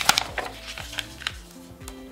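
Zebra Sarasa gel pen handled and tried out on paper: a sharp click at the start, then several lighter clicks and taps. Soft background music with held notes plays underneath.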